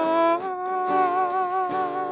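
A woman singing long held notes with a slight waver, stepping up to a higher note about half a second in, over an acoustic guitar picking chords.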